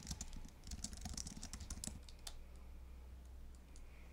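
Faint typing on a computer keyboard: a quick run of key clicks that stops about two seconds in, with one more key press shortly after, over a low steady hum.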